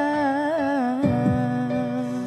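A woman's wordless, wavering vocal run closes a sung line over sustained musical accompaniment. About halfway through, the voice stops and the accompaniment holds a steady chord.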